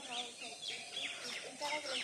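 Small birds chirping in short high calls, with faint voices of people talking in the background.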